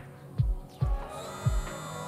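Electric eraser's small motor whining steadily from about halfway through, over background music with a bass-drum beat nearly twice a second.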